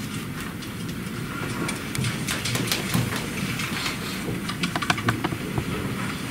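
Rustling and clicking handling noises over a low steady hum in a meeting room, scattered at first and thicker from about two seconds in.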